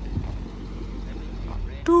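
Chevrolet Corvette's LS3 6.2-litre V8 idling through a Corsa exhaust, a low steady rumble that drops away near the end, with a click at the start. A held voiced 'do' note begins at the very end.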